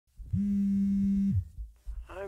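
A mobile phone vibrating: one steady low buzz about a second long that drops in pitch as it cuts off.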